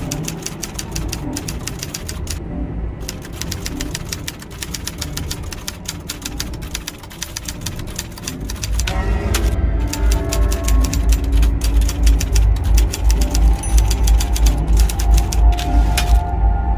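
Rapid typewriter-style key clicks, a sound effect keeping pace with on-screen text being typed out letter by letter, pausing briefly a few times. Beneath them runs a music score that grows louder, with a heavy deep bass pulse from about halfway through.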